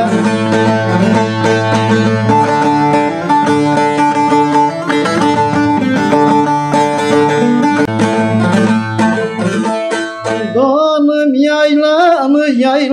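Bağlama (long-necked Turkish saz) played in a quick instrumental passage of a Turkish folk song, rapid plucked notes over a low steady drone. Near the end the drone drops out and a man's singing voice comes in.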